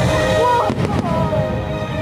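Aerial fireworks bursting with a cluster of bangs about three quarters of a second in, over loud show music.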